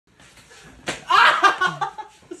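A single sharp slap about a second in, as two men grapple hands in a play-fight, followed by loud laughter and voices.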